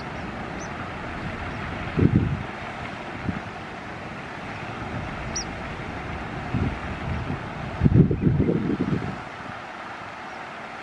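Wind buffeting the microphone in low rumbling gusts, the strongest about two seconds in and again around eight to nine seconds, over a steady outdoor hiss. Two short high chirps sound, one at the start and one about five seconds in.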